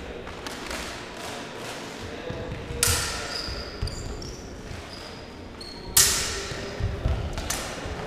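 Sabres clashing in a fencing bout: a sharp metallic strike about three seconds in and a louder one about six seconds in, each ringing briefly in a large hall. Lighter knocks, short high squeaks and thudding footwork on the floor come between them.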